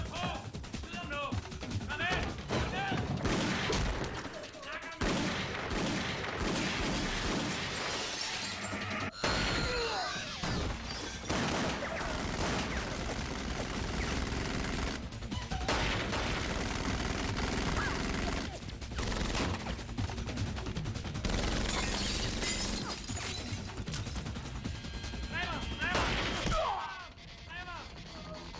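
Film action mix: repeated gunfire and impacts over a music score.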